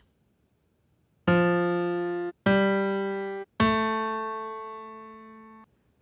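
Three piano tones played on an iPhone app's on-screen piano keys, one note at a time, each a step higher than the last. The first two last about a second each; the third rings about two seconds, fading away.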